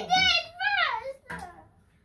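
A young girl's high-pitched, excited voice for about a second, followed by a single short knock.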